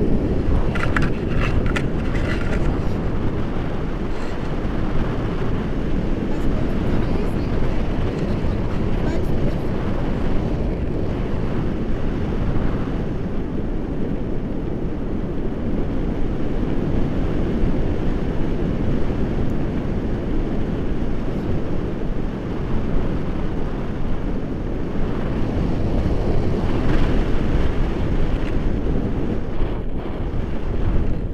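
Airflow of a paraglider in flight buffeting an action camera's microphone: a steady, loud low rumble of wind noise, with a few brief crackles in the first couple of seconds.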